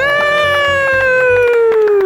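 A person's long, loud, held vocal cry that slides slowly down in pitch and drops away at the end, voiced during the strain of carrying and setting down a heavy stone.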